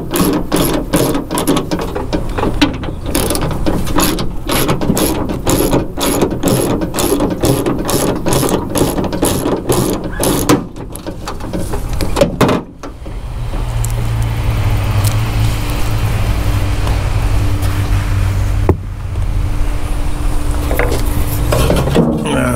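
Socket ratchet clicking in quick back-and-forth strokes, about three or four clicks a second, as a bolt is backed out of a car door's inner panel. The clicking stops about twelve seconds in, and a steady low hum carries on after it.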